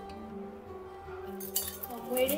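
Background music with slow, held notes. About one and a half seconds in, a metal spoon starts clinking rapidly against a steel tumbler as a milky drink is stirred.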